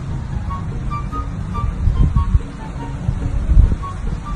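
Wind buffeting an outdoor microphone: a heavy, uneven low rumble. Soft background music notes play faintly over it.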